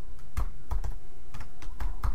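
Computer keyboard being typed on: an uneven run of keystrokes, several a second, as a name is typed out.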